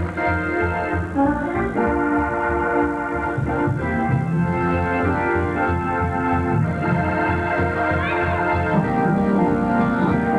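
Gospel organ playing held chords over a pulsing bass line: the instrumental opening of the song before the choir starts singing.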